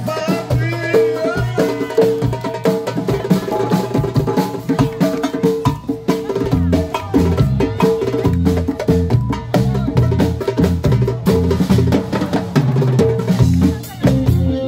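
Live percussion ensemble: darbuka and djembe played by hand in a fast, dense rhythm over a drum kit, with a melody line in the first couple of seconds. A low bass guitar line comes in about six and a half seconds in.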